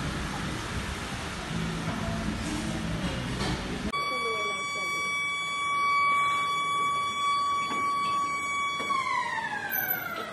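Street noise with a low hum, then, after a cut about four seconds in, a power tool working at the door lock gives a steady high whine. Near the end the whine falls in pitch as the tool winds down.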